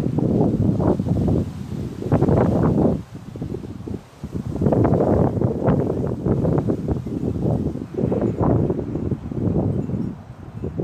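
Wind buffeting the phone's microphone in gusts, a low rumbling noise that surges and eases, dropping off briefly about three and four seconds in.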